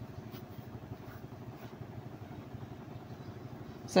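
Steady low background hum with a few faint scratches of a pen writing and drawing a box on paper.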